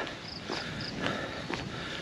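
Crickets chirping in short high chirps, three close together in the first second, over a steady low hiss of night ambience, with a couple of soft footsteps.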